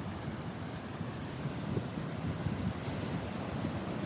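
Ocean surf breaking on a sandy beach, rough and wind-blown, with wind buffeting the microphone in uneven low gusts.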